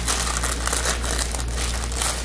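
Plastic packaging of a tray of Pillsbury refrigerated cookie dough crinkling steadily as it is handled and unwrapped.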